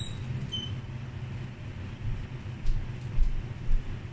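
A door being opened, with a brief high squeak near the start, over a steady low hum. A few dull thumps follow in the last second or so, like footsteps on a wooden floor.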